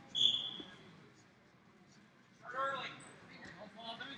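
A short, high squeak just after the start, from a wrestling shoe on the mat, then a raised voice about two and a half seconds in, over the low din of a gym hall.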